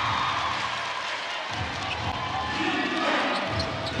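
Basketball being dribbled on a hardwood court, low bounces about every half second, over steady arena crowd noise.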